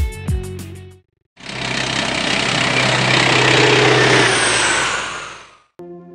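A loud engine roar with a steady low drone swells up after a brief gap and holds for about three seconds. A faint falling whistle sits on top near the end, then the roar fades away. Guitar-led intro music plays just before it, and quieter music follows.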